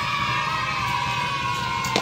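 A single long held call, steady and falling slightly in pitch, with a sharp click near the end.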